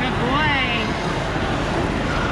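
Busy indoor ice rink ambience: a steady background din of the rink and skaters, with a short voice sounding about half a second in.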